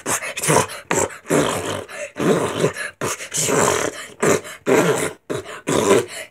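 A boy beatboxing: a string of loud, breathy mouth bursts and vocal noises, each under a second long, with short gaps between.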